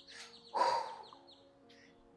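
A bird chirping in quick series of high falling notes, at the start and again just past the middle, over faint background film music. A short, loud, breathy burst of noise comes about half a second in.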